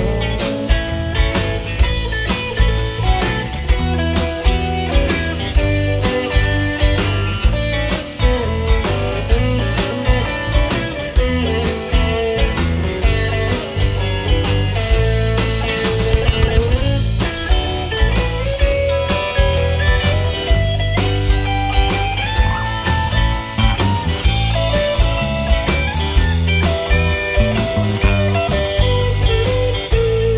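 Live rock band playing an instrumental break between verses: electric guitars, bass and drum kit over a steady beat, with a lead melody line bending and wandering above the band.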